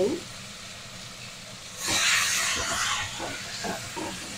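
Chopped tomato, ginger and green chilli hitting hot oil with whole spices in a kadhai: a faint hiss, then a burst of sizzling about two seconds in that lasts over a second and dies down.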